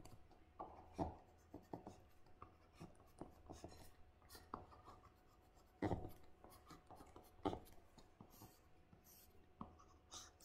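Faint tapping and scratching of a stylus on a tablet screen while a circuit diagram is drawn, in many short strokes with sharper taps about a second in, around six seconds and around seven and a half seconds.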